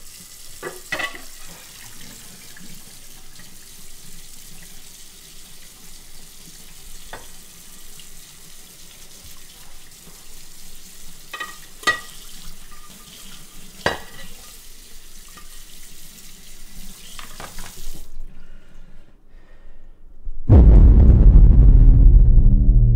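Water running from a faucet into a sink, a steady hiss broken by a few clinks and knocks, which stops about 18 seconds in. Near the end a loud, deep droning tone sets in.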